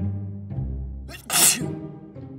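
A man sneezes once, a sharp burst about halfway through, over background music with low bass notes.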